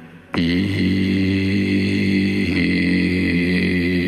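A singer holding one long final note over a karaoke backing track. The note begins about a third of a second in after a brief break and stays at a steady pitch, closing the song.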